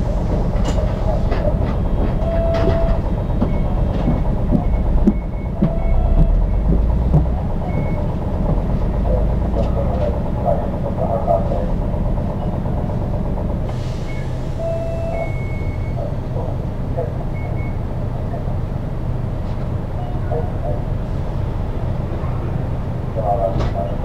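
Diesel engine of a city bus idling while the bus stands at a stop, a steady low hum that grows heavier for several seconds in the middle. Short electronic beeps sound now and then over it.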